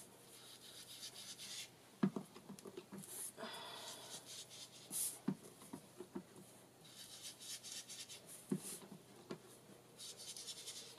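A foam ink blending tool rubbed and dabbed over a cardstock tag: faint scratchy swishing strokes in several spells, with a few light knocks scattered through.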